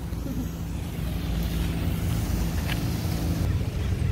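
Street ambience: a steady low rumble of vehicle traffic with a faint constant engine hum, and wind on the microphone.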